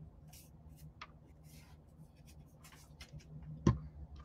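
Faint rustling, scraping and light taps of hands handling paper and small craft items on a tabletop. One sharp knock on the table comes near the end.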